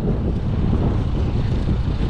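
Strong wind buffeting the microphone: a loud, steady, low rumble with no clear pitch.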